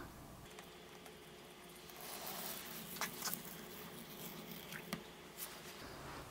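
Tape being peeled slowly off a model railway scenery base, tearing away glued static grass fibres: a faint rustling that starts about two seconds in, with a few small ticks.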